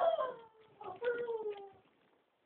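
A dog whining: two drawn-out, falling cries, the second and longer one about a second in.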